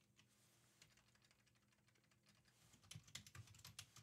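Near silence, then a quick run of faint computer keyboard keystrokes starting about three seconds in.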